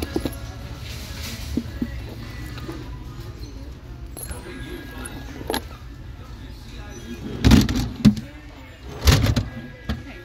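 Purses being handled and shifted in a store display drawer: small clicks and rustles, then two loud rubbing thumps near the end, over a steady low hum with background music and voices.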